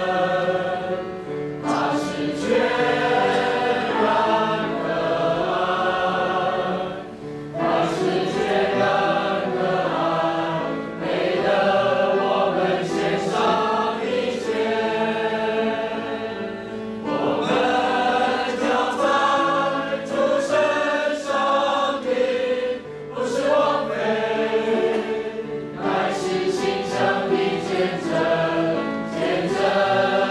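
A congregation singing a hymn together in Mandarin, many voices in sustained lines, with short breaks between phrases every several seconds.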